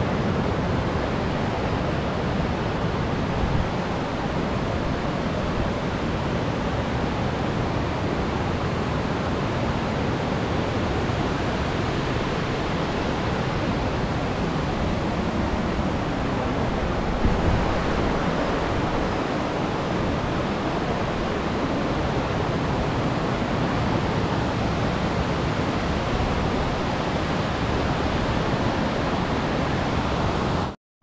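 Steady rushing of a waterfall, a loud even hiss and roar of falling water, with one brief bump about halfway through.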